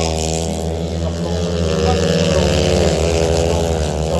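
Several longtrack racing motorcycles, 500 cc single-cylinder methanol engines, running hard at high revs as they race round the dirt oval. The engine notes waver, dip a little about halfway through and climb again.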